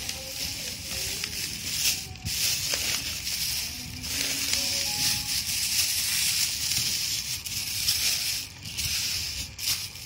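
Thin plastic bags rustling and crinkling as they are handled and pulled open. The crinkling goes on throughout, swelling and easing with the handling.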